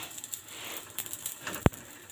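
Fingers pressing and pinching a flatbread as it cooks in a heavy pan: faint soft pats and rustle over a low steady hiss, with one sharp click about a second and a half in.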